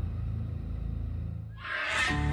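Title-sequence sound design: a low rumble dying away, then a swelling rush of noise near the end that leads straight into music.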